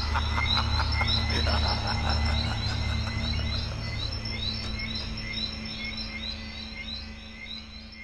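Night-time ambience sound effect: frogs croaking in a fast pulsing rhythm, with repeated short high chirps over a low rumble. The sound fades out gradually through the second half.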